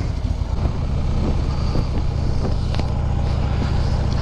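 Harley-Davidson touring motorcycle's V-twin engine running steadily under the rider, a deep even engine note with a haze of road noise above it.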